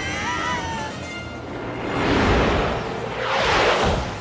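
Animated-film soundtrack: score music mixed with sound effects. A wavering, pitched cry comes in the first second, followed by two loud rushing swells of noise, the second building just before the end.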